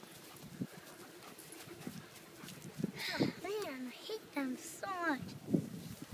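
A child's wordless shrieks and squeals in rough play: a run of about five short, high cries that fall in pitch, starting about halfway through.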